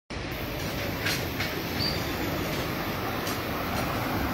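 A car driving along a street toward the listener, its engine and tyres making a steady rumbling noise over street ambience, with a couple of faint clicks a little over a second in.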